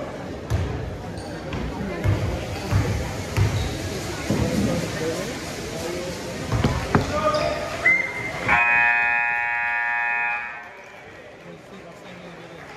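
Basketball bouncing on a hardwood gym floor in scattered thumps, under crowd chatter. About eight seconds in the gym's scoreboard horn sounds once for about two seconds, then cuts off.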